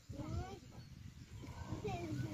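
A person's voice calling out briefly twice, rising early on and falling near the end, over low scraping and thudding of manure being dug.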